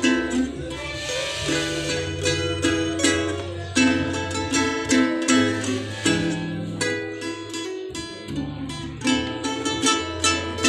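Ukuleles and an acoustic guitar strummed and plucked together, an instrumental passage of a Visayan Christmas song without singing, over low held bass notes.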